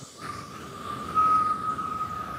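A single steady high tone from the track's production, held without a change in pitch, over a low grainy noise. It comes in just after the start and is loudest around the middle.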